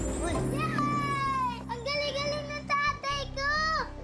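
Children shouting and cheering in high, excited voices, several long calls in a row, over background music with steady low held notes.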